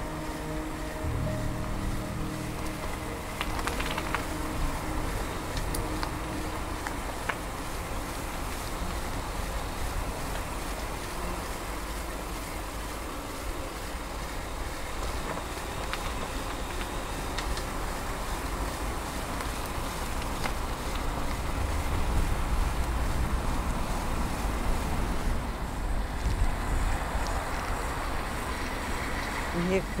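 Wind rumbling on the microphone of a camera mounted on a moving bicycle, with road noise. The rumble grows louder about two-thirds of the way through.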